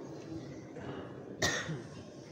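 A single short cough about a second and a half in, over the low room noise of a large seated crowd.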